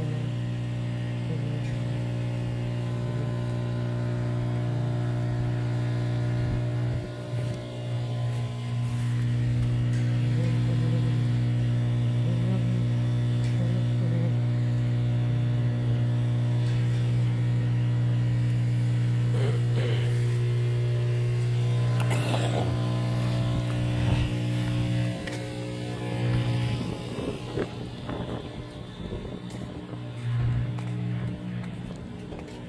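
A steady low hum with several overtones, holding one pitch throughout, with a brief dip about seven seconds in. In the last third, scattered knocks and rustles come and go over it.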